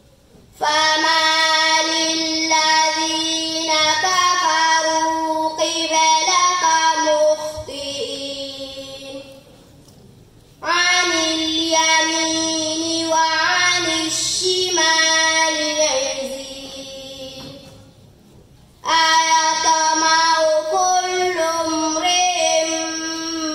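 A young girl reciting the Quran in a melodic, chanted style, holding long drawn-out notes. There are three long phrases, each fading out before a short pause for breath, the first pause just before the middle of the clip and the second near the end.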